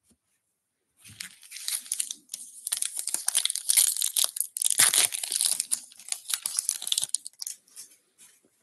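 Foil wrapper of a trading card pack being torn open and crinkled by hand: a crackling, rustling tear that starts about a second in and runs for several seconds.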